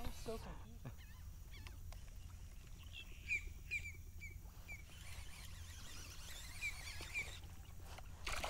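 A bird calling in short, falling chirps: a run of four about three seconds in, then two more near the end. Faint low, steady background noise runs beneath.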